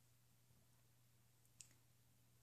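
Near silence: room tone with a faint steady low hum, broken by one faint short click about one and a half seconds in.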